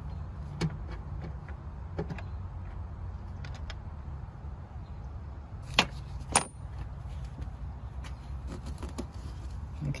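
Metal hand tools clinking as they are handled in a car's engine bay: a few light clicks, then two loud sharp clinks either side of six seconds, the second ringing briefly. A steady low hum runs underneath.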